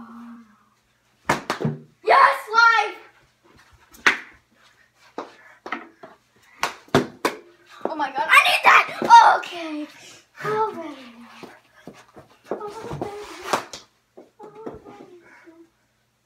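Children's excited wordless shouts and cries during a knee hockey game, loudest a couple of seconds in and again around the middle. Between them come several sharp knocks of mini hockey sticks and a ball.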